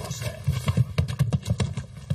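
Feet scuffling and stamping on railway track gravel as two men grapple, a quick irregular run of crunches and thuds.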